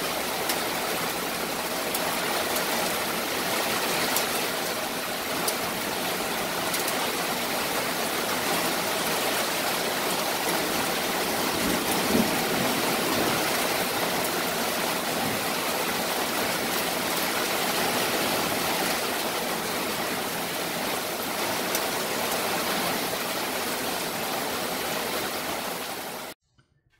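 Heavy rain falling steadily, with a few sharp ticks of drops over the even hiss of the downpour.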